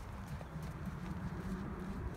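Wind buffeting the phone's microphone as a steady low rumble, with faint footsteps splashing through shallow water on wet sand.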